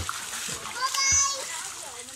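Water splashing and lapping in a shallow hot-spring pool, with a child's high-pitched voice calling out briefly about halfway through.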